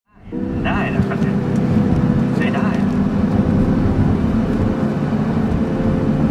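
BMW E34 520i driving, its engine and road noise heard from inside the cabin, loud and steady. Two short high-pitched calls break through it, about a second in and again at two and a half seconds.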